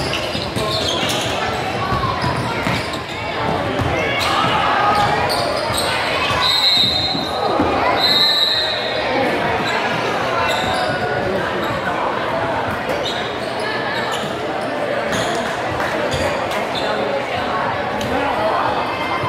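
Gym crowd talking and calling out over a basketball game, with the ball bouncing on the hardwood floor, echoing in the large hall. Twice near the middle, a referee's whistle blows briefly, stopping play for a foul that leads to free throws.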